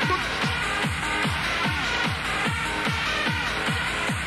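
Hard trance / hardstyle dance music playing: a heavy kick drum with a sharply falling pitch on every beat, about two and a half beats a second, under sustained synth chords.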